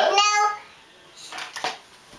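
A young child's high voice calling out briefly, then a faint, short noise about a second and a half in.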